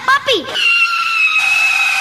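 The end of a shouted warning, then a long, steady, high-pitched screech that drifts slightly lower, with a second, lower tone joining about halfway through: a dramatised accident sound effect.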